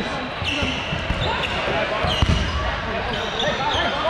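Dodgeball play on a hardwood court: rubber sneaker soles squeaking in short, high chirps as players cut and stop, and one sharp ball impact a little after two seconds in, with players calling out in a large echoing hall.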